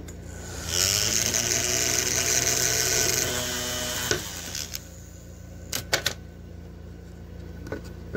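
A small electric motor runs for about three and a half seconds, its pitch rising slightly, with a high hiss over it, then stops abruptly. A few sharp clicks follow a couple of seconds later.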